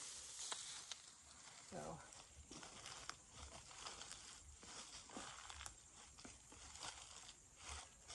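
Faint, irregular rustling and crackling of dry fallen leaves and dead plant stems being handled and stepped through in a garden bed.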